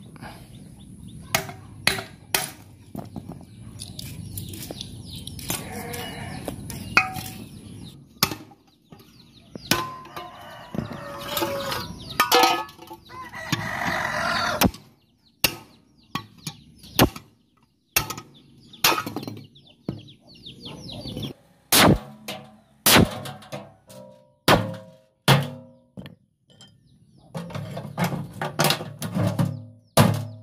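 A hammer striking the metal parts of an old knapsack pest sprayer (stainless tank, steel pump tube and brass fittings) to knock the brass loose for scrap. The blows come as sharp, irregular metallic knocks, more frequent and louder in the second half, some with a brief ring.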